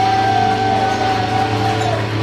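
Electric guitars ringing out through the amplifiers in a sustained drone, with one high steady tone that bends downward near the end, over a low steady hum.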